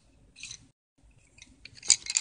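Handling noise: a brief scratchy rustle, then small clicks building to one sharp click near the end.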